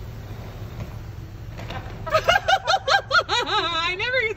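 A woman laughing in a quick run of high-pitched giggles that starts about halfway through, over the low steady hum inside an idling car.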